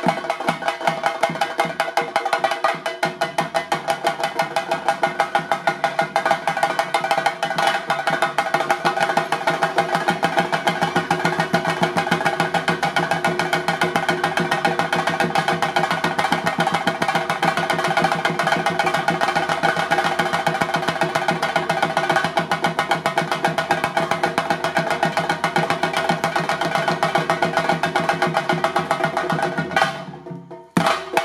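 Chenda drums beaten with sticks in a fast, dense, unbroken rhythm: theyyam ritual drumming.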